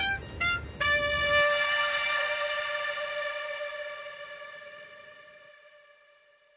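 Background music: two short notes, then one long held note that fades away slowly to near silence.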